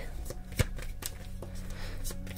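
A tarot deck being shuffled by hand: scattered soft card snaps and clicks at an uneven pace, over a low steady hum.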